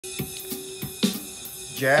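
Roland GO:KEYS 5 keyboard's built-in jazz accompaniment style playing a drum pattern of hi-hat, snare and cymbal hits through its onboard speakers, with a held note underneath.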